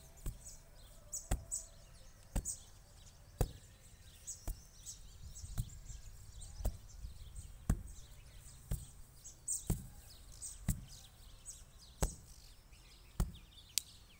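A brick pounded by hand onto loose soil at the bottom of a planting pit, tamping it firm: dull thuds about once a second.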